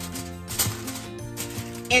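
Aluminium foil crinkling in a few short rustles as hands press it down over a baking pan, over background music with sustained tones.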